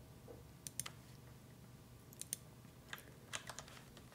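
Faint, scattered key presses on a computer keyboard: short, sharp clicks in small irregular clusters over quiet room noise.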